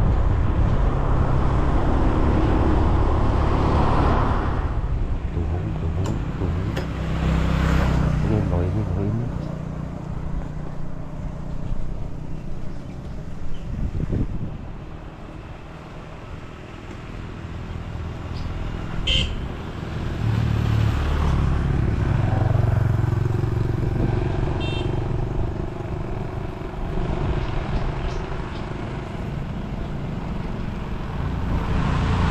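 Motorbike engine running with road and wind noise as it rides, easing off around the middle and picking up again later. A couple of short high chirps are heard in the second half.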